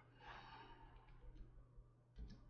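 Near silence: a faint breath near the microphone, lasting under a second a little way in, over a low steady hum.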